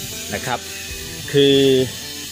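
A man's voice speaking Thai, a short phrase and then a drawn-out hesitation sound held for about half a second, over a steady background hiss.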